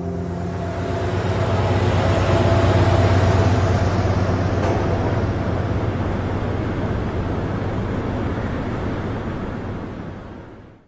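Box truck driving along, a low engine and road rumble that swells over the first few seconds and then slowly fades away.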